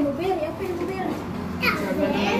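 Overlapping chatter of children and adults, with children's voices prominent.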